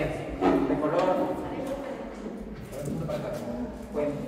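Schoolchildren talking among themselves in overlapping chatter, with a few light knocks of objects being handled.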